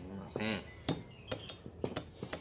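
Meat cleaver knocking on boiled crab on a thick wooden chopping block: four sharp knocks in the second half.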